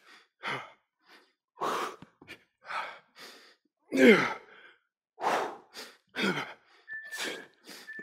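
A man panting hard after burpees: short, sharp exhalations about once a second, with one voiced exhale falling in pitch about four seconds in. Near the end a steady electronic interval-timer beep sounds in short pieces, marking the close of the work interval.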